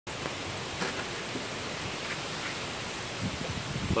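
Wind rushing through tall meadow grass and on the microphone, a steady hiss with a few faint ticks and low buffeting near the end.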